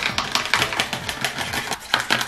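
Rapid, irregular clicking and tapping of plastic as hair dye is mixed with an applicator brush in a plastic tray.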